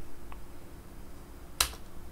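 A faint tick just after the start, then a single sharp click about one and a half seconds in: keystrokes on a computer keyboard.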